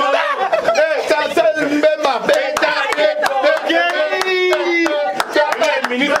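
A small group of people chanting, singing and shouting together in celebration, several voices at once, with one voice holding a long note about two-thirds of the way through, over sharp claps.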